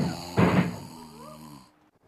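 Rhythmic vocal grunts, about two a second, then a longer moan that rises and falls and is cut off abruptly: the sound of a couple having sex.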